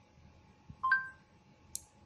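Two-note rising chime from the phone's Google voice-input prompt, sounding as it finishes listening to a spoken command. A short faint click follows near the end.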